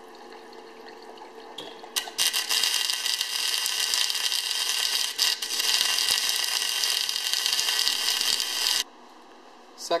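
Joemars TR100 EDM tap burner's electrode arcing into a broken tap under a constant flow of flushing water: a loud, steady hissing crackle of sparks and splashing that starts about two seconds in and cuts off abruptly near the end. Before it, only the quieter running of the flushing water.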